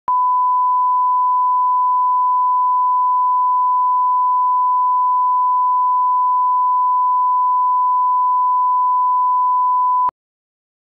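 Broadcast test tone: a loud, steady, unbroken high beep at one pitch, the line-up tone played with colour bars to set audio levels.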